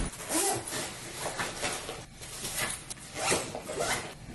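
Bag zippers being pulled in several quick zips, with rustling of the bag fabric as the bags are handled and packed.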